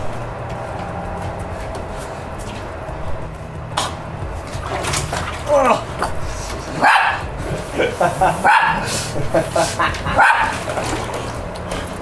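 A small dog barking and yipping excitedly, several sharp barks in the second half, mixed with a man gasping and groaning as he lowers himself into ice-cold water.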